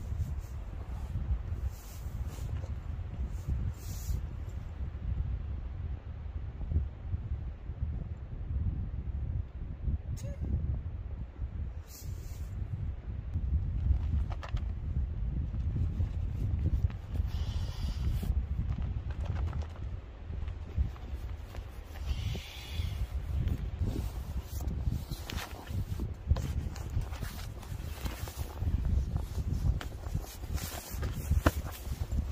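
Wind rumbling on the microphone, with scattered rustles and knocks from someone moving about and handling nylon hammock fabric and an inflatable sleeping pad, with two brief rustling bursts in the middle.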